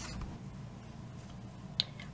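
Quiet room tone with a faint low hum, and one short, sharp click near the end.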